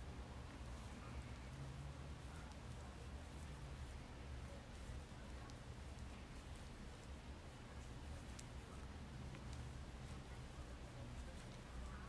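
Faint rustling and scattered light ticks of a metal crochet hook drawing cotton string yarn through stitches, over a low steady hum of room tone.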